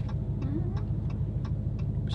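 Steady low rumble of a car driving, heard from inside the cabin, with a regular light ticking about three times a second. About half a second in there is a brief hum from a voice.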